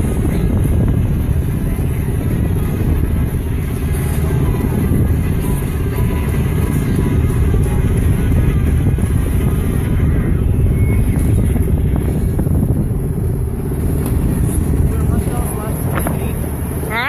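A boat under way on its motor: a steady low engine drone with wind buffeting the microphone.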